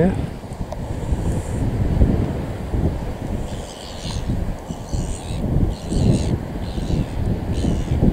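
Strong wind buffeting the microphone, a gusting low rumble. In the second half, faint high-pitched chirps repeat about once a second.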